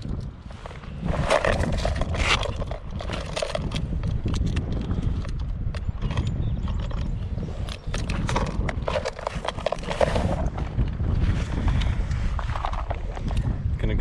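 Strong wind buffeting the microphone in a steady low rumble, with scattered light clicks and knocks as a plastic topwater popper lure is handled and clipped onto a metal snap.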